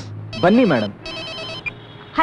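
An electronic telephone ring: two trilling bursts about half a second apart, with a short spoken word over the first.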